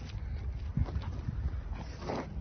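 Heavy hoofsteps of a 1.5-tonne Angus bull walking on packed ground, low thuds clustered about a second in.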